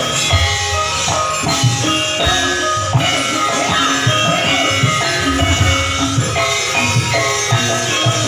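Live Javanese gamelan ensemble playing: sustained bronze metallophone notes stepping through a melody over low hand-drum strokes.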